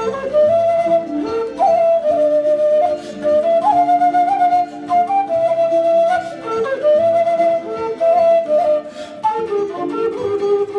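Long wooden end-blown flute playing a slow melody in one register, with quick upward turns and slides between notes, over a lower accompaniment of held notes.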